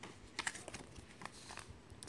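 Paper advertisement inserts being picked up and handled: faint, irregular light clicks and rustles.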